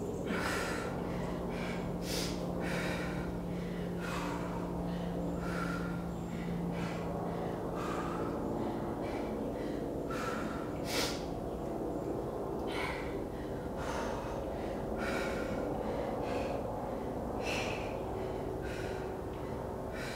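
A woman breathing hard in short, sharp breaths, about one a second, while doing single-arm dumbbell rows.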